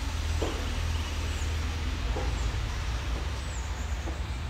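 Steady low rumble of wind buffeting the microphone outdoors, with a few faint, short, high falling chirps.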